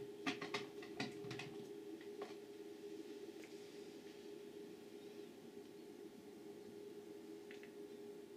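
A few light clicks from handling the modulator and its cable plugs, then a faint steady hum with no interference noise: the Triax Tri-Link RF modulator passing a Sky Digibox's audio cleanly.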